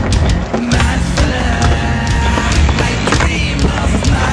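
Skateboard wheels rolling on concrete with several sharp board clacks, under loud heavy rock music.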